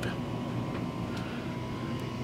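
Steady hum and airy hiss of the coach's rooftop air conditioning running (upgraded 15,000 BTU Penguin low-profile units), with a faint steady whine above it.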